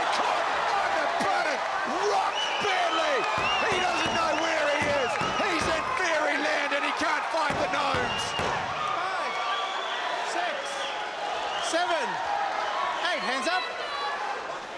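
Kickboxing fight crowd shouting and cheering over a knockdown, many voices overlapping, with several dull thumps in the first half.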